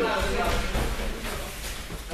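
Two judoka moving in a grip on a tatami mat: bare feet stepping and sliding on the mat and the heavy jacket fabric rustling, with no throw landing in this moment.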